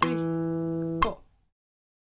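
Guitar playing a single note, the E at the second fret of the fourth string that ends the exercise, held for about a second and then stopped with a short click as it is damped.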